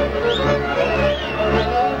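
Transylvanian Hungarian folk string band playing: a fiddle melody with high sliding, wavering notes over steady chord accompaniment and a bass on a regular beat about twice a second.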